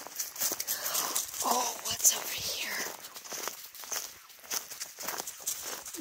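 Footsteps and running dog paws crunching and rustling through dry fallen leaves, a steady patter of small crackles.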